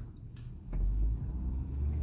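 Low rumble of a car heard from inside the cabin, rising about two-thirds of a second in as the car moves off and then holding steady.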